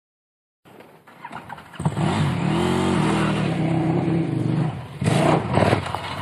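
Adventure motorcycle engine coming closer down a dirt trail: faint at first, then running steadily at low revs from about two seconds in, with a louder, rougher burst of throttle near the end as it arrives.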